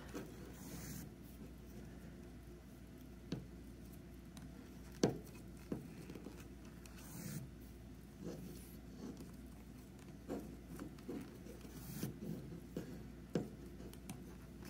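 Faint rubbing and scratching of chunky yarn being drawn through stitches on a plastic 12-peg knitting loom with a metal loom hook, with a few light, sharp clicks scattered through.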